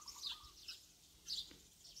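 Faint bird chirps: short high calls scattered through the pause, with a low warbling trill in the first half.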